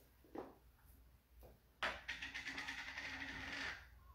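Handling noise as a large glass fermenting jar is fetched: a sharp click about two seconds in, then a steady rasping scrape lasting about two seconds.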